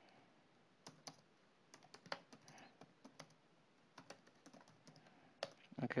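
Computer keyboard being typed on: a dozen or so faint, irregularly spaced keystrokes as a short command is entered.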